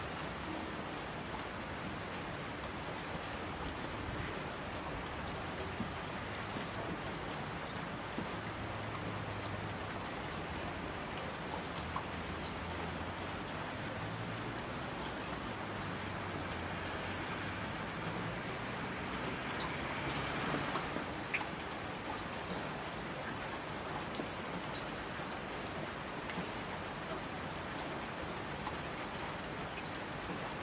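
Steady rain falling on a surface, an even hiss with scattered drop sounds. The hiss swells briefly about two-thirds of the way through.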